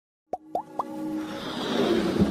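Animated logo intro sting: three quick rising-pitch pops about a quarter second apart, starting about a third of a second in, followed by a swelling whoosh.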